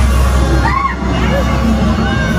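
Haunted-house maze soundtrack: a loud, steady low droning rumble with short voice-like cries over it about a second in.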